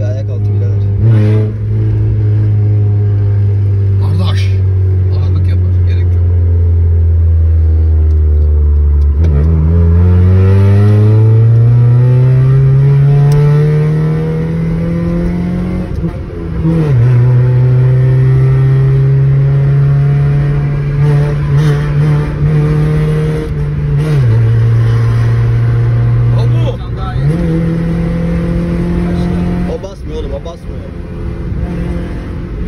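Honda car engine heard from inside the cabin while driving. It runs steadily at first, then climbs in pitch for several seconds as the car accelerates, drops sharply at a gear change, and dips and rises again near the end.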